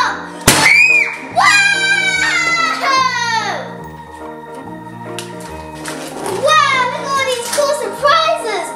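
A giant latex balloon bursting with one sharp bang about half a second in, popped with a pin, followed by a child's high-pitched squealing voice. Background music with a steady chord pattern plays throughout.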